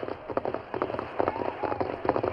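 Radio-drama sound effect of horses' hoofbeats, a quick uneven run of hoof strikes as riders travel.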